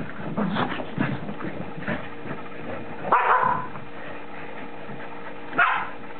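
Keeshond dogs playing, with short barks and yips. The loudest call comes about three seconds in, and a brief sharp one near the end.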